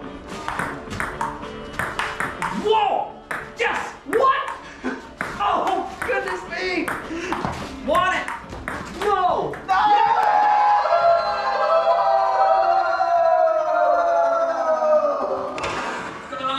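Table tennis rally: a fast run of sharp clicks from the celluloid ball striking paddles and table for about ten seconds, over music. The clicks stop about ten seconds in, leaving only the music with long held tones.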